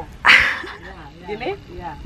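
A short splash of water poured from a plastic scoop onto wet buffalo dung, the loudest sound, about a quarter of a second in; water is being added to thin the dung for smearing onto the floor.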